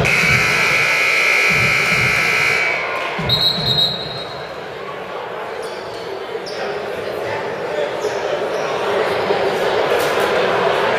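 Gym scoreboard horn sounding steadily for about three seconds at the end of a basketball timeout, followed a moment later by a short, high referee's whistle, over crowd chatter and low thumps echoing in the hall.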